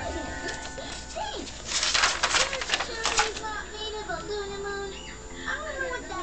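Cartoon soundtrack: background music under short calls that glide up and down in pitch, with a loud rush of hissing noise from about two seconds in, lasting over a second.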